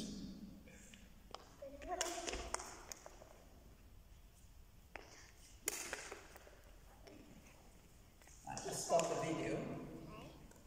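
Badminton racket hitting shuttlecocks: about five sharp taps spread over the first six seconds, each with a short echo in a large sports hall.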